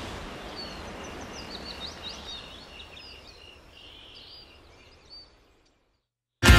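Outdoor ambience of birds chirping with many short, quick calls over a low, even background hiss and rumble. It all fades away to silence about five seconds in.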